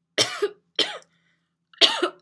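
A woman coughing into her fist: three coughs, about a second in from the first to the second and nearly a second more to the third.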